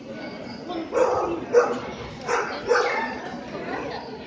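A dog barking about four times in quick succession, over a background of voices.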